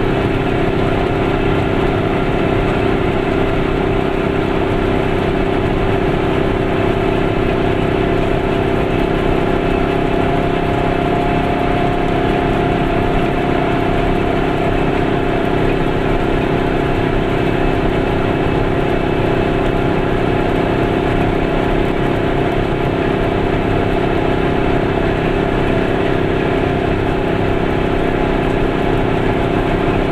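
Goggomobil's small two-stroke twin engine running steadily at cruising speed, heard from inside the cabin together with road noise.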